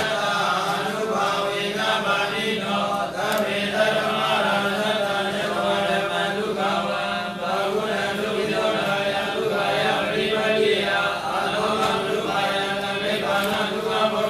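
A man's voice clears its throat once at the start, then recites scripture in an unbroken chanting cadence close to the microphone.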